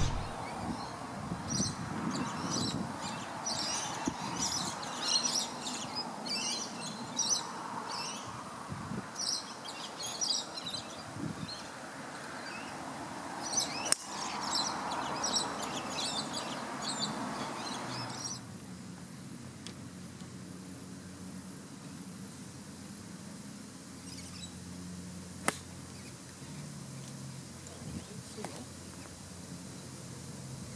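Birds chirping and twittering over open outdoor ambience, with the sharp crack of a golf club striking a ball about halfway through. Later the background turns quieter and a single sharp click is heard.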